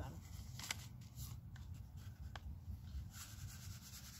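Faint rustling and a few soft clicks from a paper seed packet being handled and a person moving, over a low steady rumble; the rustle grows near the end.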